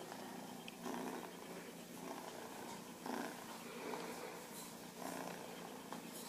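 Eight-week-old tabby kitten purring, the sound swelling and easing about once a second.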